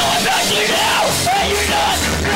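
Punk rock band playing loud, with a singer yelling over the music.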